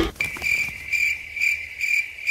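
Cricket chirping, a steady high chirp repeating about two to three times a second: the stock 'crickets' sound effect used for an awkward silence in a meme.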